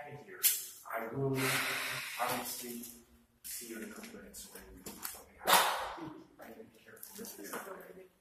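Indistinct, low voices mixed with short hissy bursts of noise. The loudest burst comes about five and a half seconds in.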